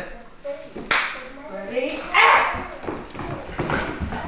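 A small Jack Russell–beagle mix dog barking in play, mixed with a person's voice and laughter. There is a sharp knock about a second in, and the loudest burst comes around two seconds in.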